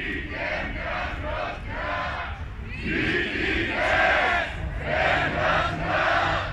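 A crowd of people chanting a slogan together in short, repeated phrases, growing louder about halfway through.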